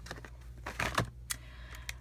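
Plastic blister packs on card backing being handled and set down on a cutting mat: a few short clicks and rustles, loudest about a second in.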